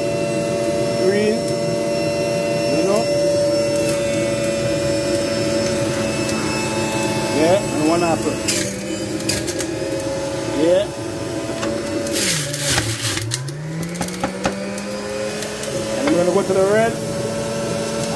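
Electric centrifugal juicer running with a steady motor whine. About twelve seconds in, the motor's pitch sags sharply and climbs back as a piece of produce is pushed through, with a burst of shredding noise.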